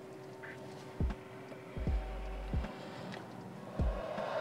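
Quiet breathing of someone smoking a cigarette: drawing a puff and inhaling the smoke through the nose for a French inhale, with soft low puffs of breath on a clip-on microphone about a second in, around the two-second mark and near the end. Faint steady background music runs underneath.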